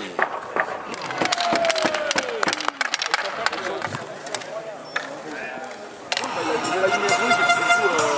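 Inline hockey rink sounds: many sharp clacks and knocks with voices in the background. About six seconds in, music with long held notes starts suddenly.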